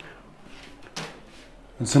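A short, light knock about a second in, with a fainter one before it, over quiet room tone; a man's voice starts near the end.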